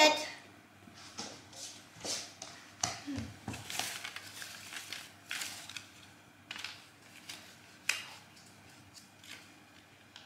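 Quiet, intermittent rustles and light taps of handling: stiff folded paper pieces being picked up and moved about on a wooden floor.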